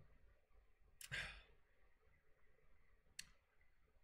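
A man sighs once, a short breathy exhale about a second in, in an otherwise near-silent small room; a faint click comes near the end.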